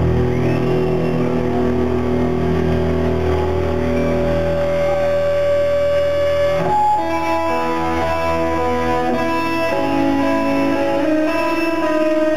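Live indie rock band playing an instrumental passage: electric guitars ringing out held chords over bass and drums. About two-thirds of the way through there is a sharp hit and the chords change to a new set of higher notes.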